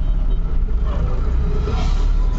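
Diesel vehicle's engine running as it drives off, heard from inside the cab as a steady low rumble.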